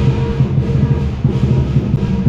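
Music with drumming, loud and continuous.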